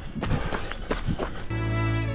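Irregular footfalls and camera jostling as a runner sets off on a dirt track. About one and a half seconds in, background music with long held chords comes in.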